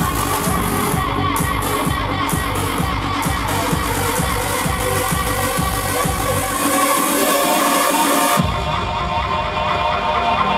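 Electronic dance music from a DJ set played loud over a festival main-stage sound system, heard from within the crowd. A steady beat of about two hits a second runs until the bass falls away about two-thirds of the way through. A little over eight seconds in, the track switches to a new section with the bass returning.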